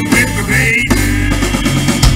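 Live rock band playing guitars over a drum kit, with bass drum and snare hits prominent.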